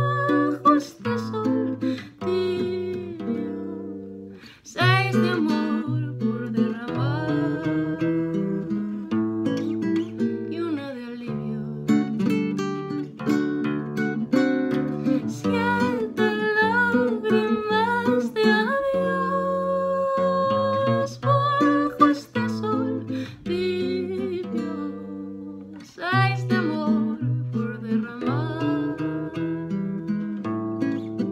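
A woman singing a slow song to her own acoustic guitar accompaniment, with long held notes that waver in a vibrato.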